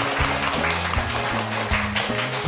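Music with a bass line and a steady beat, with a group of people clapping along.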